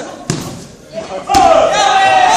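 Two thuds of bodies or feet hitting the judo mat, the second sharper, about a second and a third in, followed at once by a loud, drawn-out shout.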